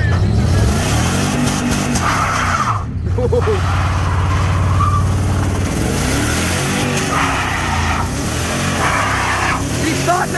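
Dodge Ram pickup engine revving hard through a burnout, its pitch rising and falling and held high for a stretch in the middle. The spinning rear tyres squeal on the pavement in several spells.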